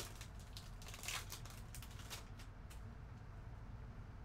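Faint crinkling and tearing of a trading card pack's wrapper being opened by hand, a run of small crackles that dies away after about two and a half seconds.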